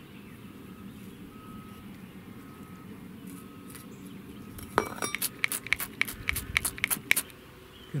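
A slim hand tool working perlite-mixed potting soil while radish seedlings are planted: a quiet first half, then a quick run of about a dozen sharp clicks and clinks from about five seconds in.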